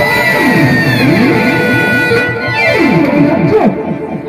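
Live Manasa gaan accompaniment music: a high held note sliding slowly down over fast rising-and-falling runs lower down, growing quieter near the end.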